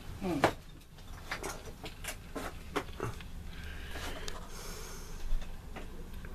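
A short murmured 'hmm', then scattered light knocks and clicks of objects being handled and moved about, with a stretch of rustling about four seconds in.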